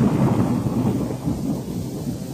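Thunder-and-rain sound effect in an electronic dance music mix: a rumbling, hissing wash that dies away over a sustained synth bass, with a synth pad coming through more clearly near the end.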